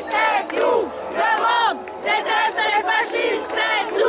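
A crowd of protesters shouting a slogan together, loud, with the chant repeating in bursts about once a second.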